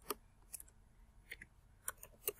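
Computer keyboard keystrokes: four faint, separate clicks, unevenly spaced, as a few letters are typed.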